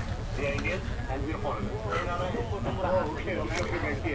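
Faint voices of people talking at a distance, over a low steady rumble.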